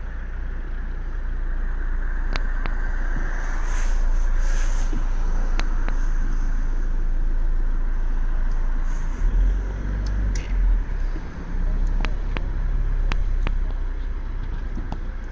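Steady road traffic noise from passing cars, with wind buffeting the microphone about nine to eleven seconds in.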